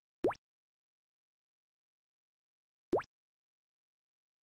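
Two short rising 'plop' animation sound effects, one a quarter second in and one near the end, each a quick upward glide in pitch, cueing each power of ten as it drops into place in the equation.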